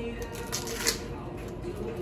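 Light handling clatter and rustling from hands working at a kitchen counter close to the microphone, with a sharp click about half a second in and a louder one just before the one-second mark.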